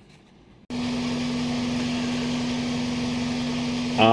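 A 2.4-litre four-cylinder Toyota Previa engine idling with a steady, even hum. It starts abruptly about two-thirds of a second in, over faint room tone.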